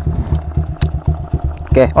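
Yamaha Vixion's single-cylinder four-stroke engine idling, a steady low putting from the exhaust.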